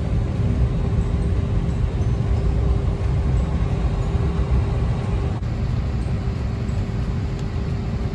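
Airliner cabin noise: a steady low rumble with a constant hum running through it.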